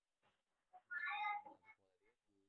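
A single high-pitched animal call about a second in, lasting about half a second and much louder than the faint voice around it.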